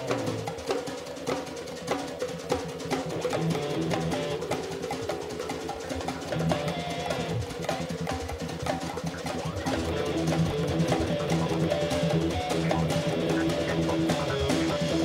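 Progressive rock recording with the bass guitar boosted in the mix: an instrumental passage of drum kit, bass guitar, guitar and keyboards, getting a little louder about ten seconds in.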